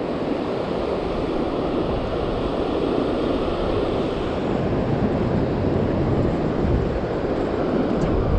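Steady wash of ocean surf running in over shallow sand, with wind on the microphone.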